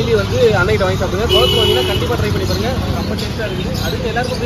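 Men talking over a steady rumble of road traffic, with a short steady beep a little after one second in.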